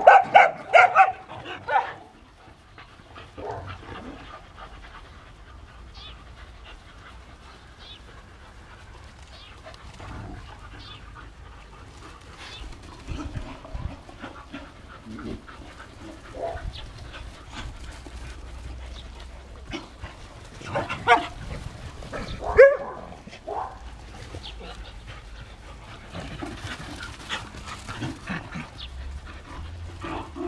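Several dogs barking and yelping in rough play. There is a loud burst at the start, quieter scuffling and calls in between, and two more loud barks about two-thirds of the way through.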